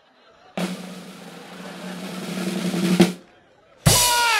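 A drum roll on a drum kit, growing steadily louder under a long, held shout of "Juan!" and ending on a sharp hit about three seconds in. Near the end, after a short silence, comes another loud hit with a shout.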